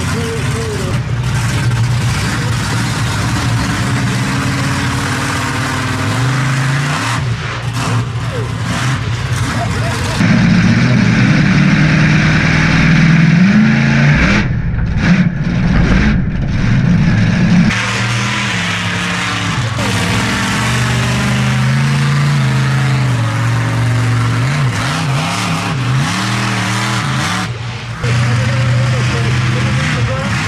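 Monster truck engine running hard and revving up and down as the truck drives over a row of crushed cars. For several seconds in the middle it is heard from inside the cab, louder.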